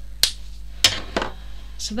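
Two sharp clicks about two-thirds of a second apart, then a fainter one, as small hard craft items are handled on a work mat.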